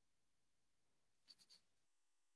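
Near silence, with three faint, quick ticks about a second and a half in.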